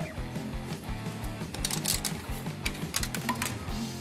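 Background music with held low notes, with two short runs of rapid metallic clicking from a socket wrench turning out the 8 mm bolts on a scooter's CVT cover, about halfway through and again a second later.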